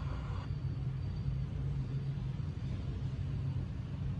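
A steady low rumble and hum of background noise, even throughout, with no distinct events.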